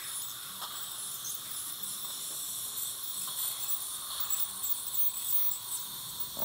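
Dental ultrasonic scaler running on the lower teeth, with its water spray and the suction tube in the mouth: a steady high hiss and whine as it clears tartar.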